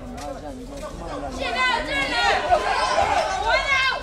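A man talking over background chatter, then, from about a second and a half in, loud high-pitched voices shouting in short repeated yells.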